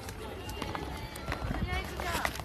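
Faint talking under the rustle, knocks and low rumble of a phone microphone being handled and moved about.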